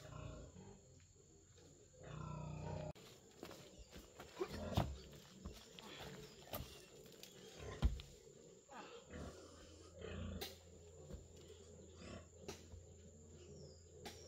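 Leafy tree branches being handled and pulled: faint rustling with scattered sharp snaps and knocks.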